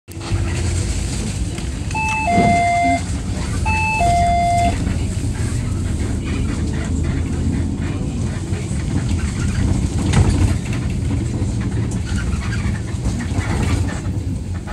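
Inside a Zyle Daewoo NEW BS106 NGV city bus under way, its natural-gas engine and road noise giving a steady low rumble. A stop-request chime sounds twice, each time a high note falling to a lower one ('ding-dong'), about 2 and 4 seconds in, signalling the driver to stop at the next stop.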